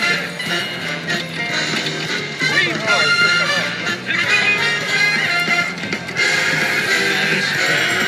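WMS Super Monopoly Money slot machine playing its free-spins bonus music and reel-spin sounds as the reels spin, with voices chattering in the background.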